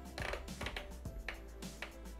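Soft background music, with a few faint taps and clicks from a hand setting the Thermomix TM5's control dial before it runs.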